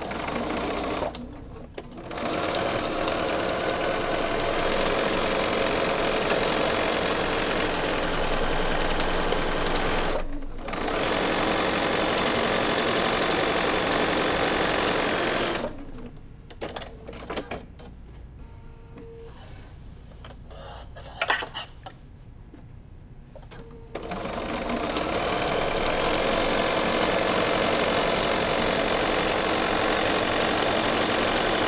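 Bernina sewing machine with a walking foot stitching quilting lines through fabric and batting, running steadily in long runs with brief stops. In the middle the machine stops for about eight seconds, with small handling clicks and one sharp click, before it starts sewing again.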